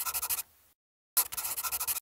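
A pen scratching across paper as a signature is written: a scratchy stroke ends about half a second in, and after a short pause a second stroke runs on.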